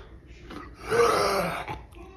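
A dog making one guttural vocal sound about a second long, starting near the middle, likened both to a seal or sea lion and to a Tibetan throat singer.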